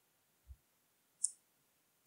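Near silence broken by a faint low thump about half a second in and a single short, sharp click a little past the middle.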